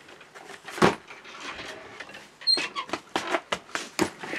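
A soft case full of banknotes being handled and shut: a single knock about a second in, then a run of quick knocks and rustles, with a brief high squeak, as the lid is closed.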